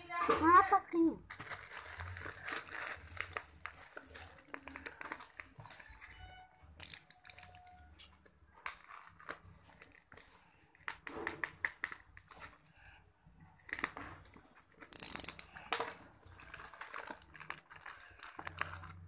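Plastic packaging crinkling and rustling by hand as a courier polybag and a bubble-wrap sleeve are opened, in irregular bursts with a few louder crackles, the loudest about fifteen seconds in. A short voice sounds right at the start.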